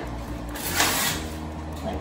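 A sheet of 220-grit sandpaper being torn by hand: one short ripping sound about a second in, over background music.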